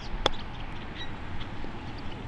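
A golf club striking the ball on a short chip shot: one sharp click about a quarter second in.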